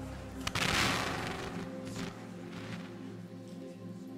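Soft, sustained live worship music with long held tones. About half a second in, a sudden loud burst of noise cuts across it and fades within about a second.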